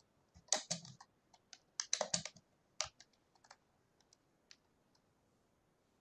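Irregular sharp clicks and taps in short quick clusters, thinning out and stopping about four and a half seconds in.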